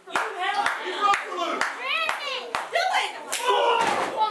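Spectators shouting and calling out, with sharp hand claps about twice a second through the first couple of seconds and a few more later.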